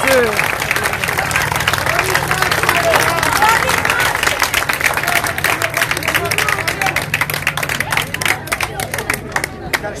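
Small crowd applauding: a dense run of hand claps that thins out near the end, with voices calling over it.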